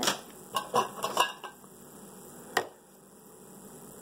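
Light knocks and clatter of products being handled on a tabletop as the toothpaste tube is put aside and the plastic vitamin bottle picked up: a few knocks in the first second or so, then a single sharp click about two and a half seconds in.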